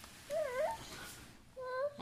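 A baby's short, wavering high-pitched vocal sound about a third of a second in, followed by a second, briefer one near the end.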